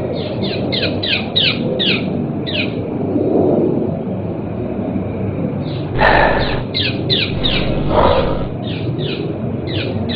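A bird calling: runs of quick, falling chirps, about three or four a second, over a steady low rumble. A louder rough noise comes about six seconds in and again near eight seconds.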